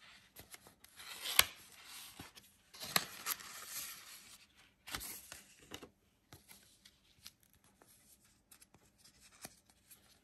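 Kraft cardboard and paper packets of a screen-protector kit being handled and pulled apart, with irregular rustling and scraping and a sharp click about one and a half seconds in. The handling goes quieter in the second half, down to scattered soft paper ticks.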